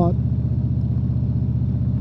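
Touring motorcycle's V-twin engine running at a steady cruise, its low, even exhaust pulse under wind and road noise.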